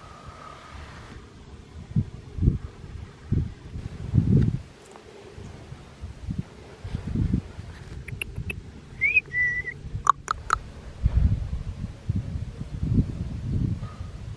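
Irregular low rumbling bumps of wind and handling on a handheld microphone, with a short high whistle-like call about nine seconds in (a quick rise, then a held note) and a few sharp clicks or chirps around it.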